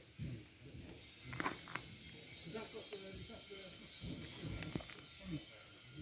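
Faint voices talking in the background over a steady high hiss, with a few light clicks.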